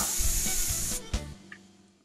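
Twin-cylinder in-line double-acting oscillating-valve model steam engine running on compressed air: a steady hiss of exhaust air with a fast clatter of its moving parts. The sound cuts off suddenly about a second in, with one click just after.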